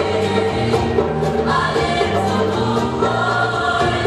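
Gospel choir singing in harmony over instrumental backing, with held low notes underneath.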